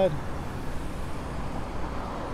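Cars passing through a street intersection: steady tyre and engine noise of traffic going by.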